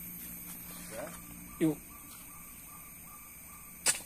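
One sharp knock near the end as a hand-held fishing spear is thrust down at a fish in a shallow stream.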